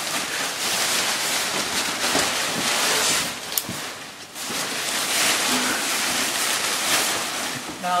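A steady rushing noise on the microphone, dipping briefly about four seconds in; no engine running.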